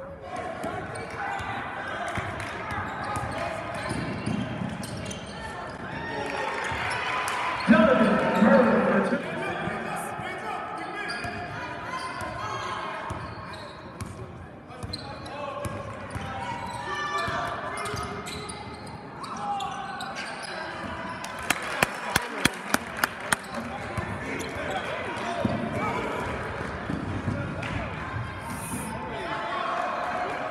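Gymnasium crowd chatter with a basketball dribbled on the hardwood court: a quick run of about seven sharp bounces, about four a second, in the second half. A loud nearby voice rises over the chatter about eight seconds in.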